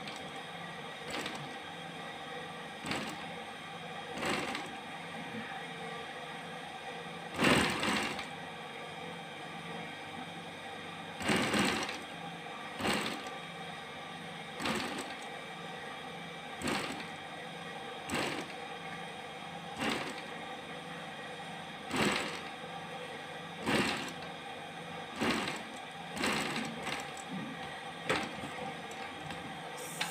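Faux-leather (skai) bag panel crinkling and crackling in short bursts about every one to two seconds as it is folded and shaped by hand, over a steady hum.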